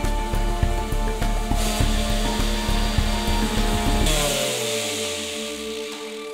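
Bosch 5-inch random orbital sander running steadily on an end-grain cutting board, then switched off about four seconds in, its pitch falling as it winds down to a stop.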